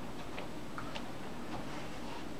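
A few faint, short clicks, about two-thirds of a second apart, over a steady low room hum.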